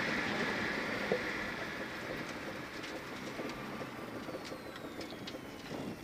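Rally car heard from inside the cabin, off the throttle and slowing into a hairpin: the engine and road noise die away steadily, with a faint whine falling in pitch and a few light clicks.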